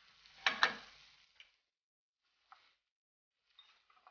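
Two quick clinks of a metal fork against a small ceramic cup about half a second in, then a few faint, scattered ticks.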